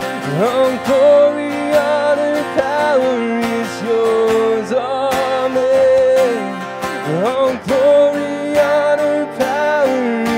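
A man singing a worship song live, with sustained and gliding notes, over a strummed acoustic guitar.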